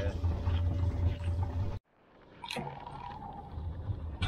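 Steady low hum of a boat engine idling, which cuts off suddenly a little under two seconds in. After a short silence a quieter background returns, with a brief steady tone.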